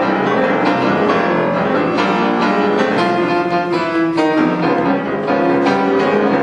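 Grand piano played solo, a fast tune with many quick notes.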